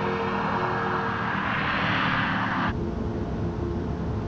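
Rushing road noise of a car driving past, swelling and then cutting off abruptly a little over halfway through, over a film score of steady held notes. A low rumble, as heard inside the moving car, takes over after the cut.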